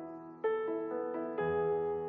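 Electric stage piano playing a soft passage of notes and chords. A new note or chord is struck about every quarter second from about half a second in, and the strikes at about half a second and about one and a half seconds are the loudest.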